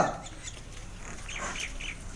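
Faint outdoor background with a few short bird calls, a quick run of three or so about a second and a half in.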